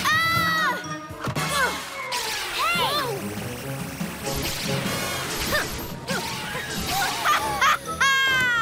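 Cartoon soundtrack of background music and sound effects: short wordless vocal exclamations, a crash, and a fast buzzing pulse as the ray fires its beam.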